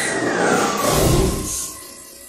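Sound effects of an animated robot moving into view: a whining tone that rises and then falls, over a mechanical whir and clatter that swells to a low rumble about a second in, then eases off.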